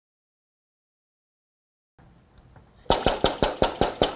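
Air-operated double-diaphragm pump running, its air exhaust pulsing in a fast, even rhythm of about six strokes a second. The pulses cut in loudly about three seconds in; before that the sound track is silent.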